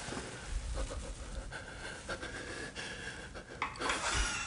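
A person breathing close to the microphone, with scattered small clicks and rustles.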